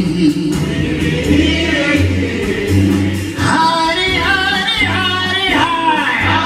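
A gospel choir singing live with a jazz big band, a steady bass line pulsing under the voices. About halfway through, the singing swells louder with bending, held notes.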